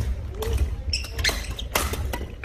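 Badminton singles rally on a wooden gym floor: sharp racket hits on the shuttlecock, with players' footsteps thudding and sneakers squeaking on the court.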